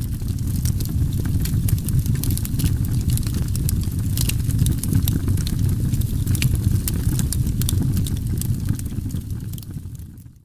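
A wood campfire crackling, with many sharp pops and snaps over a steady low rush of the burning fire. It fades out at the very end.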